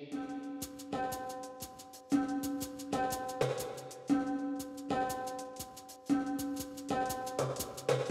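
Background music: held chords that restart about every two seconds, over a steady, light percussion beat.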